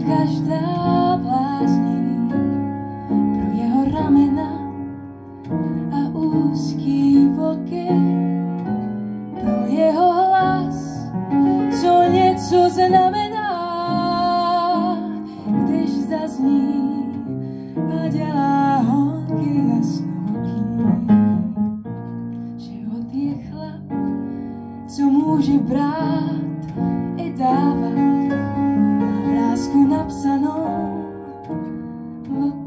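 A woman singing a blues song, accompanied on the piano.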